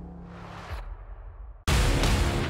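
Logo transition sting: a low held music note fades out with a short whooshing swell about half a second in. Near the end a sudden loud whoosh-hit starts the next sting.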